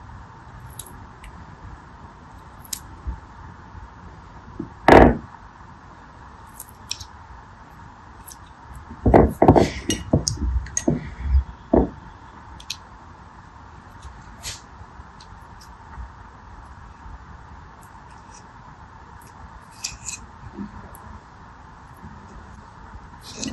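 Water beads being handled and pierced with a craft-knife blade over glass trays: scattered soft clicks and taps, a louder knock about five seconds in, and a busy run of knocks and clinks around ten seconds in, over a steady faint hiss.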